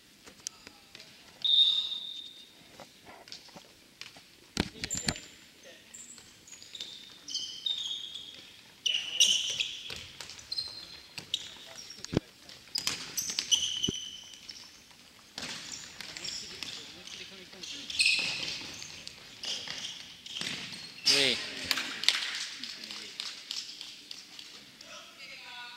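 Futsal being played on a wooden gym floor: many short, high shoe squeaks, thuds of the ball being kicked and bouncing, and players calling out now and then.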